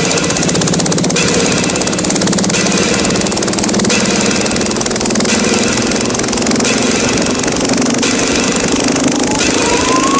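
Drum and bass record playing on a turntable: a fast, continuous rattling pulse over a low tone that slowly rises in pitch, with a rising sweep starting near the end.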